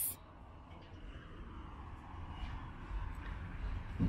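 Quiet, steady low background rumble with no distinct event standing out.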